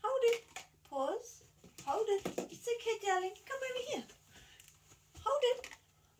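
Only speech: a woman talking in a high-pitched voice in short phrases.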